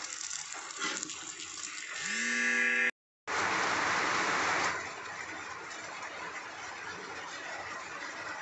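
Water heating in a steel pot on the stove, making a steady rushing hiss. The hiss is louder for about a second and a half after a short break partway through, then settles lower. Before the break there is a soft clatter and a brief buzzing tone.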